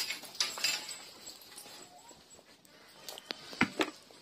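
A dog at close range making short, noisy sounds in the first second, followed by a few sharp knocks near the end.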